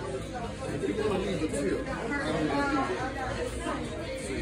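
Indistinct chatter: several people talking at once, none of it clear words.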